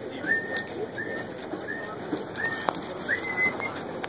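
A bird calling: a series of about six short, high whistled notes, each rising and then held briefly, roughly one every two-thirds of a second.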